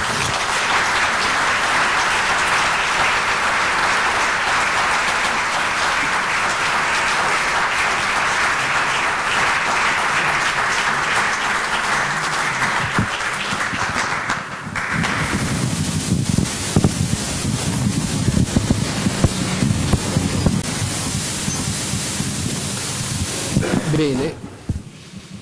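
An audience applauding steadily for about fifteen seconds at the end of a lecture. The clapping then stops, leaving rustling room noise with scattered knocks.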